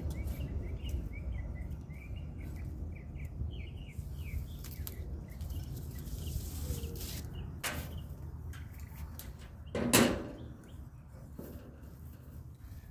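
Small birds chirping repeatedly over a steady low background noise during the first few seconds. A metal climbing stick and its strap are handled as they come off a tree trunk, with a few light clicks and one loud knock about ten seconds in.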